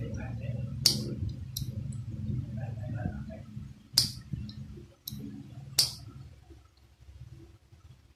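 Sharp clicks of a small screwdriver working an electric kettle's rusty auto-off thermostat switch. Three loud clicks come about a second in, at four seconds and near six seconds, with a few fainter ones between them.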